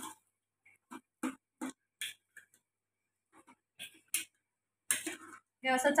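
A steel spoon stirring in a stainless-steel pot of curry, clinking against the pot in about nine short, irregular knocks with silences between.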